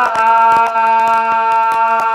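A man singing a long, steady held note, unaccompanied, in Tày/Nùng heo phửn folk-song style.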